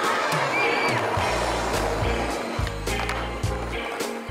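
Music with a stepped bass line that comes in about a second in, over a skateboard's wheels rolling on street concrete, with several sharp clacks of the board.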